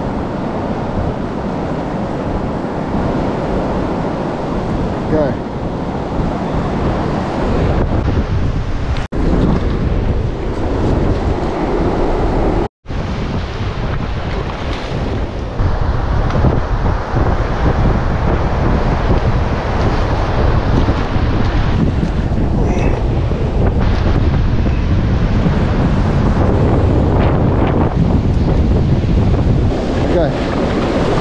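Surf breaking and washing up the beach, with wind buffeting the microphone; the sound cuts out twice for a split second, about 9 and 13 seconds in.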